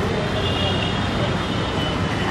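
Steady road traffic noise, with faint voices mixed in.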